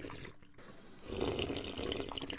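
Liquid pouring and splashing into a small bowl, in two spells with a brief break about half a second in.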